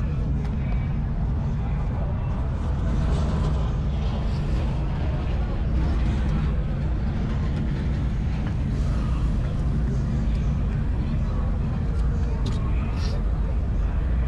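Dirt late model race car V8 engines running with a steady low rumble, along with indistinct voices.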